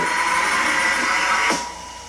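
Animated logo intro sting from the played video: a hissy electronic sound with steady tones inside it, cutting off sharply about one and a half seconds in, leaving a thin steady tone.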